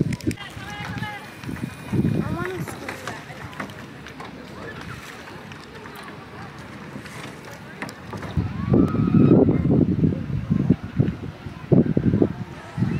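Indistinct voices of people talking, with no clear words; quieter in the middle, then louder speech-like bursts in the last few seconds.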